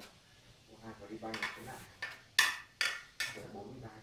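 A few sharp, light metallic clicks and clinks in the second half, the loudest about two and a half seconds in, each dying away quickly.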